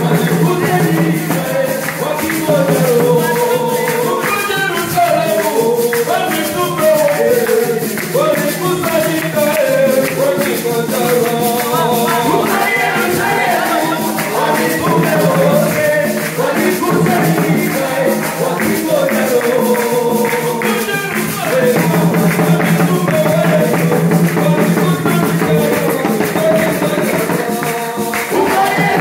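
A congregation singing a Swahili hymn together, a leader's voice amplified through a microphone, over hand drums and a steady percussion beat.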